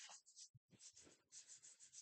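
Faint scratching and light taps of a stylus writing on the glass of an interactive display panel.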